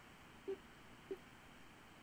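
Faint hiss of an open teleconference phone line with two short blips of tone, about half a second and just over a second in. The remote speaker's audio is not coming through: the line is cutting out.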